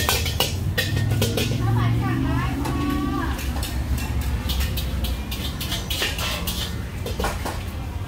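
Metal ladle and wok spatula clanking and scraping against a wok during stir-frying of fried rice, in sharp irregular knocks, over a steady low rumble from the gas burner.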